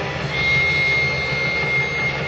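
Live electric rock band holding a sustained droning chord, with a single high steady guitar tone entering about a third of a second in and held until near the end.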